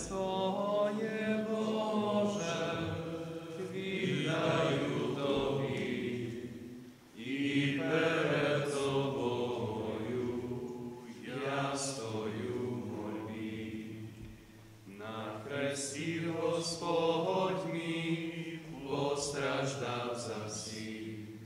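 Men's voices singing a slow church hymn at communion during a Catholic Mass, in long sung phrases with short breaks about seven and fourteen seconds in.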